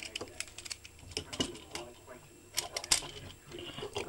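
Hard plastic action-figure parts clicking and clacking as they are handled and fitted together, a quick scatter of small clicks with a few louder clacks.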